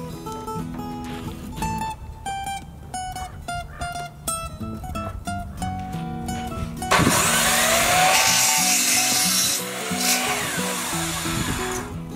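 Acoustic guitar background music, then about seven seconds in a miter saw starts up and cuts through a 2x4 board. It is loud for about three seconds, its motor whine rising and then falling away as the blade spins down.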